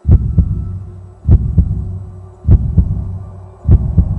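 Heartbeat sound effect: four deep double thumps, each pair a quick lub-dub, coming about every 1.2 seconds, loud.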